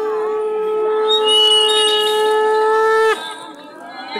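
Conch shell (shankha) blown in one long steady note, with a higher tone joining about a second in; the note cuts off abruptly about three seconds in.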